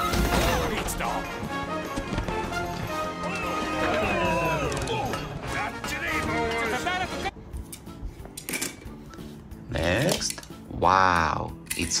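Animated-film soundtrack: dramatic music mixed with voices and effects. It cuts off abruptly about seven seconds in, giving way to sparser, quieter sound, with a short sweeping tone that rises and falls near the end.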